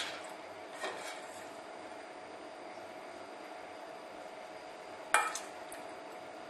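Metal spoon clinking against a stainless-steel bowl while scooping a herb filling: a faint knock about a second in and a sharper clink just after five seconds, over a faint steady hum.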